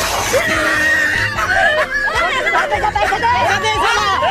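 A held scream followed by several people shouting and yelling over background music, with a short noisy burst right at the start.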